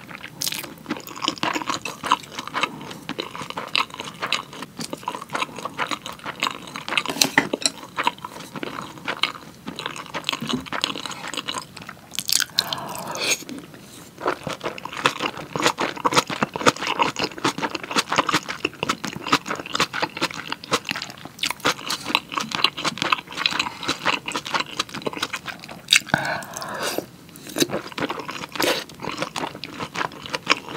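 Close-miked chewing of a mouthful of pork kimchi stew and rice, made of many small wet clicks and crunches. There are two short noisier mouth sounds, about halfway through and near the end, one of them as a spoonful of stew goes into the mouth.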